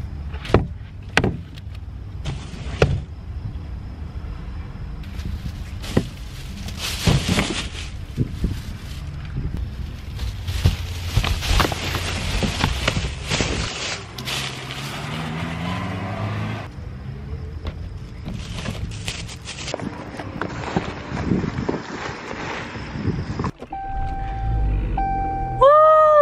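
Shopping being loaded into a car: repeated knocks and thuds as items are set down, with plastic packaging and bags rustling. Near the end a louder thump and a steady tone begin.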